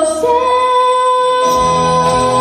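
A woman sings a Portuguese gospel song with instrumental backing, holding one long steady note. A bass line comes in about a second and a half in.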